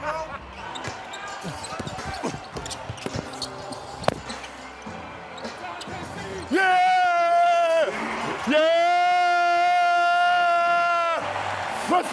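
Basketball game sounds: short sneaker squeaks on the hardwood and a sharp knock about four seconds in. Then a man's voice holds a long, steady high note twice, first briefly and then for nearly three seconds.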